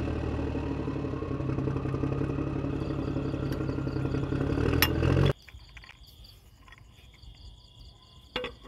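Tractor engine running steadily at an even idle, then cutting off suddenly about five seconds in, leaving only a faint background.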